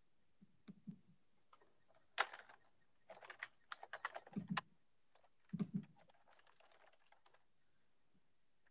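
Faint computer keyboard typing: irregular clusters of short clicks and taps, with a few soft low thumps among them.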